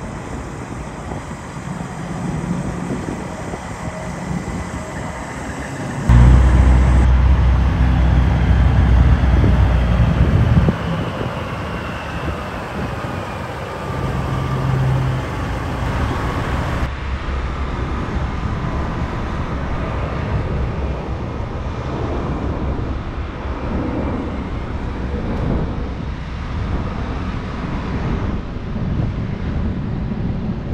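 Big-rig diesel truck engines running and moving slowly across a lot, in several short clips joined by sudden cuts. The loudest stretch is a deep, steady engine drone from about six seconds in to about eleven seconds in.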